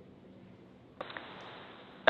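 Faint hiss, then about a second in a click as a launch-control radio loop keys open, followed by that channel's steady, narrow-band hiss.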